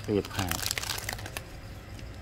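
Clear plastic wrapping of a replacement phone battery crinkling as it is handled: a quick run of crackles lasting about a second, starting about half a second in.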